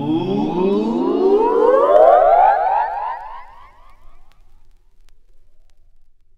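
Synthesizer tone in a wobbling, siren-like pitch glide that rises for about three seconds, then fades out as the song ends.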